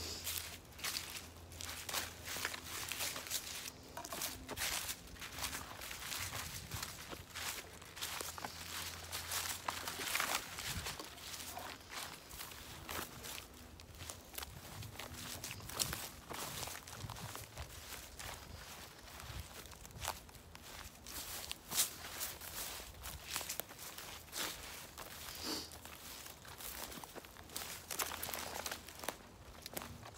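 Footsteps walking through dry leaf litter, pine needles and twigs on a forest floor: an irregular run of crunching and rustling steps, with brush brushing past now and then.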